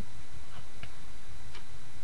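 Small scissors snipping cotton gauze, a couple of faint short clicks as the blades close, over a steady hiss.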